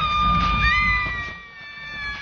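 Shrill, drawn-out screaming: one high scream held steady, with a second, higher scream joining about half a second in and sinking slightly in pitch.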